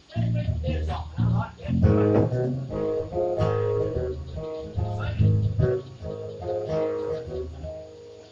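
Acoustic guitar and bass guitar picking a short, loose run of notes, the bass notes prominent, dying away near the end.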